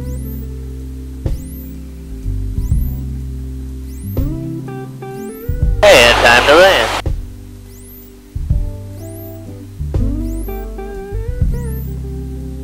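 Guitar music with a bass line, plucked notes ringing out over held chords. About six seconds in, a loud burst of voice lasting about a second cuts across it.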